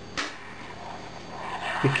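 A single sharp knock about a quarter of a second in, then soft rustling handling noise that grows louder just before a man starts to speak near the end.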